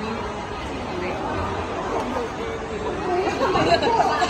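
People chattering, several voices talking over one another, growing busier and louder near the end.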